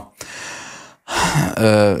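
A man's audible breath, just under a second long, followed by his speech starting again.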